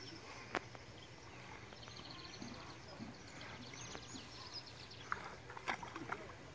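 Faint outdoor ambience of repeated high-pitched chirping calls from small wild animals, with a sharp click about half a second in and a few clicks near the end.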